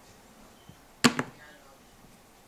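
Kicking foot in a red patent ballet flat knocking against a wall: a sharp double knock about a second in, preceded by a faint tick.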